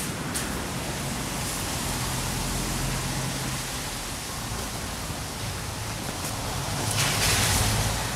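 Steady rushing outdoor street noise with a faint low hum, swelling briefly near the end.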